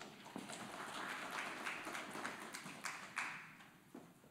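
Footsteps on a stage floor with rustling and light irregular knocks and taps.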